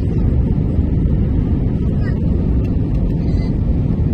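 Steady low rumble of a jet airliner's engines and rushing air, heard inside the passenger cabin during the descent.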